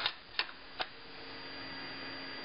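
Two light clicks of a plastic ruler being set down and positioned on paper on a desk, about half a second apart in the first second, over a faint steady hum.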